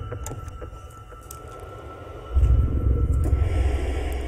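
Eerie horror trailer score: a deep, heavy drone that fades and then swells back loudly a little over two seconds in, under a thin, steady high tone and a few scattered clicks.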